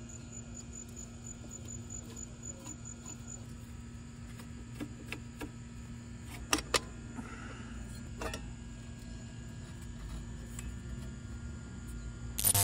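A few light, sharp clicks and taps of a screwdriver working the side screw of a motorcycle's chrome auxiliary light housing, the two sharpest close together about six and a half seconds in, over a steady low background.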